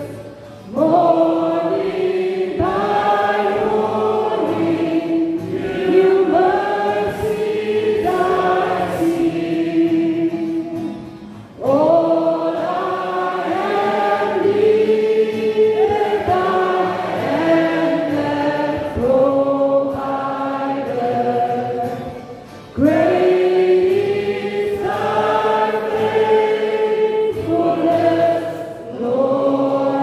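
A small mixed group of men and a woman singing together in harmony, in long phrases broken by short breaths about a third and two thirds of the way through.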